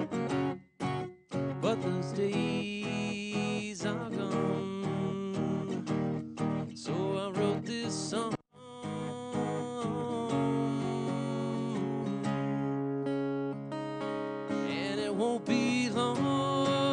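Acoustic guitar strummed in a live song, with short breaks in the playing about a second in and about eight and a half seconds in. A man's singing voice comes in over it at times.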